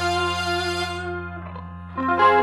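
The closing chord of a live qasidah band, with keyboard and guitar, rings out and slowly fades, its upper notes dying away first. A steady low hum from the sound system runs underneath, and a faint short note sounds near the end.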